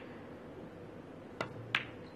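Two sharp clicks from pool balls: the cue tip strikes the cue ball, then about a third of a second later the cue ball hits an object ball with a louder click.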